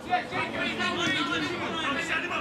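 Indistinct chatter: several people talking at once, with no clear words.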